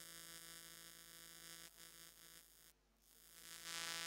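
Near silence with a faint, steady electrical mains hum from the recording chain. The hum dips out briefly about three seconds in.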